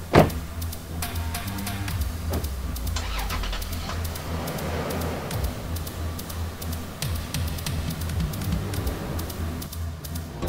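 A car door slams shut once at the start. Then a Toyota Land Cruiser Prado SUV's engine runs as it drives off, under background music.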